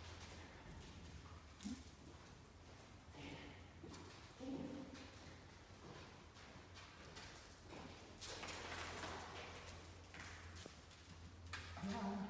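Faint footsteps of a person and a small dog walking across the arena floor, with scattered soft knocks, over a steady low hum.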